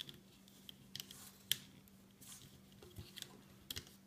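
Faint, sparse clicks and small snaps of rubber loom bands being handled with a hook on the plastic pegs of a Rainbow Loom, about eight in all, over a faint steady hum.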